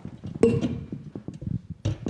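Irregular knocks, clicks and rustles of handling, as equipment is moved about at close range. The loudest is a knock about half a second in with a short ring.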